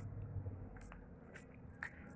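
Faint, scattered clicks of acrylic crystal beads knocking together as a strung beadwork piece is handled, over a low steady hum.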